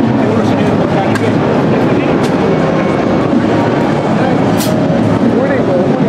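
Dense, steady chatter of many overlapping voices in a busy trade-fair hall, with a few light clicks.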